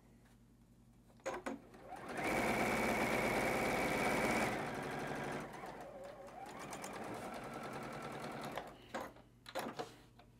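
Juki sewing machine stitching a seam through quilt fabric: it starts about two seconds in, runs fast and steady for a couple of seconds, then slows and runs more quietly until near the end. A few clicks come just before and after the stitching.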